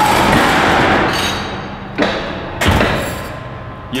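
Hydraulic guillotine sheet-metal shear cutting a steel sheet: a loud bang as the blade comes down, with the noise of the cut dying away over about a second and a half, then two more thumps about two and three seconds in as the machine finishes its stroke.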